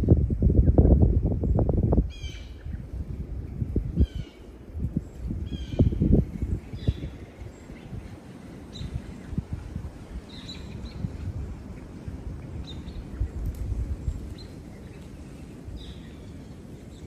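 Birds calling in a run of short, falling chirps, fainter and sparser after the first few seconds, over the crunch and crackle of dry leaf litter underfoot. A loud low rumble on the microphone fills the first two seconds.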